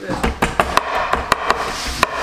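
Butt of a chef's knife handle pounding garlic cloves on a wooden cutting board, crushing them. It makes a quick run of sharp knocks, about five a second.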